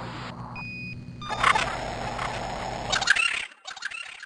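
An electronic beep lasting about a second, then a burst of hissing, static-like noise for about two seconds that cuts off suddenly, with faint crackles after. It is staged as the audio feed coming in from sensors on Mars.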